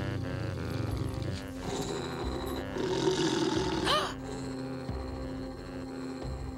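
Tense cartoon music with a large bulldog's low growling from its doghouse, building to a short swooping cry about four seconds in.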